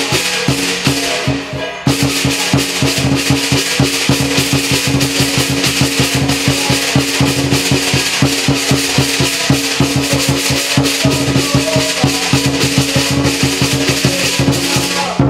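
Lion dance percussion, a big drum with crashing cymbals and a gong, playing a fast, driving rhythm. It thins briefly just before two seconds in, then comes back in at full force.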